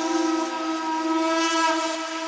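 Held electronic synthesizer chord with no kick drum or bass: a beatless breakdown in a melodic techno mix.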